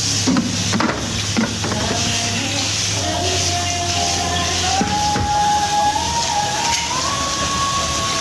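Tap water running into a stainless steel kitchen sink while something is washed in it, with a few sharp clatters in the first second and a half. A thin tune of held notes climbs in steps over it in the second half.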